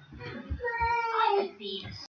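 A high-pitched voice holding a few drawn-out notes that slide in pitch.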